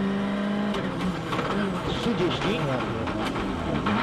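Onboard sound of a Ford Fiesta RS WRC's turbocharged four-cylinder engine held at steady high revs, then, under a second in, the throttle comes off and the revs fall and jump again and again with quick downshifts and sharp cracks from the exhaust as the car brakes into a corner.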